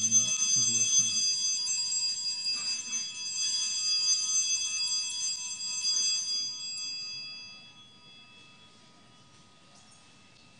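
Altar bells ringing at the elevation of the chalice during the consecration at Mass, several clear high tones sounding together. They start suddenly, ring for about six seconds, then die away.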